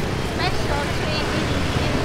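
Dense city street traffic, mostly motor scooters with some cars, running as a steady rumble, with brief snatches of voices.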